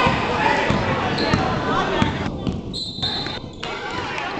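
Basketball game sounds in a gym: spectators' voices and a basketball bouncing on the hardwood floor, with a brief high tone about three seconds in.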